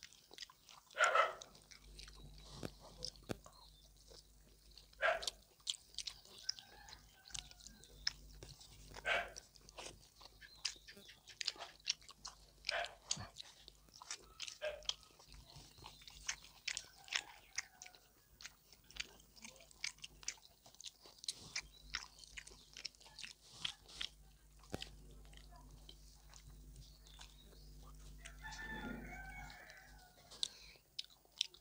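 Close-up sounds of two people chewing fatty pork belly and rice: wet mouth clicks and smacks, with a few louder smacks in the first ten seconds. A short hum near the end.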